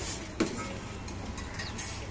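Low, steady background noise with no clear source, and a single sharp click about half a second in.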